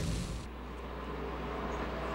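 Loud stock-car in-car noise cuts off suddenly about half a second in. A faint steady low hum is left.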